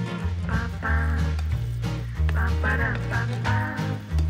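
Upbeat swing-style background music: a stepping bass line under a melody whose notes bend up and down in pitch.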